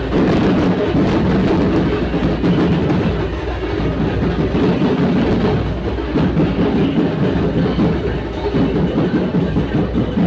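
Loud DJ sound-system music played at a street procession, dominated by heavy bass and drums.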